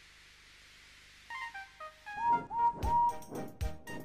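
Background music starts about a second in: a few soft stepped notes, then a jaunty tune with a steady beat and a lead that bends up into its notes.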